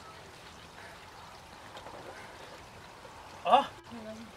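Steady rush of a small stream running beneath a granite boulder. About three and a half seconds in, one short, loud vocal shout rising in pitch, the climber's effort cry on the opening move.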